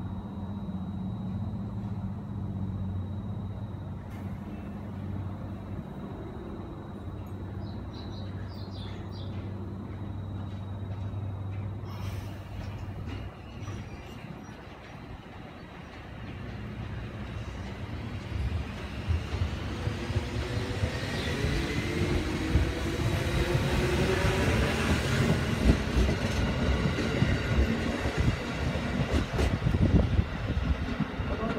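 JR 213 series electric train standing at the platform with a steady low hum, then pulling away. Its motor whine rises in pitch as it gathers speed, and its wheels clack over the rail joints, getting louder toward the end. There is a short rush of noise about twelve seconds in.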